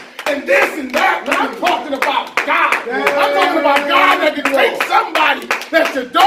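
Congregation hand-clapping under loud voices calling out. One voice holds a long note around the middle.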